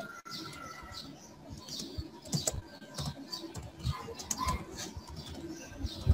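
Keystrokes on a computer keyboard: a scattered run of irregular clicks as a couple of words are typed.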